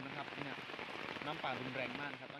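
Steady wash of heavy rain and fast-running floodwater, with a person talking over it.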